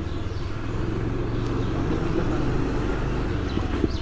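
A motor vehicle's engine running steadily, a low, even rumble with no change in pitch.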